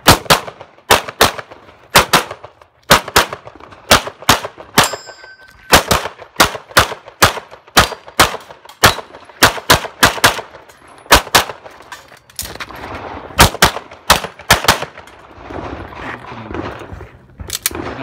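A handgun fired rapidly, mostly in quick pairs, in strings of shots separated by short pauses. The metallic ring of a steel target being hit follows one shot about five seconds in. The shots thin out for a couple of seconds near the end.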